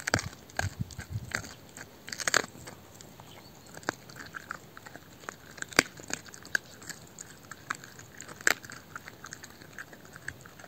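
A dog chewing and crunching a raw beef brisket bone: irregular bites and sharp cracks of bone, the sharpest near the middle and again a few seconds later.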